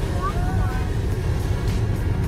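Steady low road and engine rumble heard inside the cabin of a moving car.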